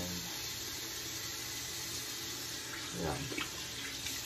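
A tap running steadily into a bathroom sink during face washing. A voice says a short word near the end.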